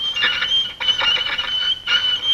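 High-pitched squeaking of lettering being written across a soaped glass window pane, held in strokes with short breaks between them.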